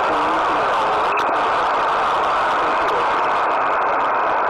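Steady hiss of band noise from a shortwave radio receiver left on an open frequency with no station transmitting.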